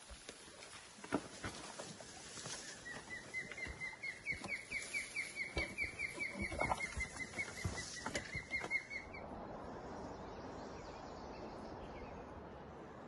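A bird calling a long run of rapid, repeated high notes, about four a second, for some six seconds, over crackling and rustling of leaves and branches as someone pushes through dense brush on foot. The calling stops abruptly near the end, leaving a soft, steady hiss.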